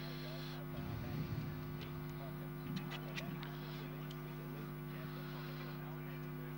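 Steady low electrical hum, with faint background voices and a few faint clicks.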